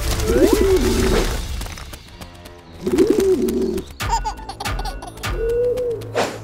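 A pigeon cooing three times, each a short wavering call, over background music.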